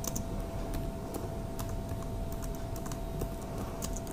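Typing on a computer keyboard: about ten irregular keystrokes, over a faint steady hum.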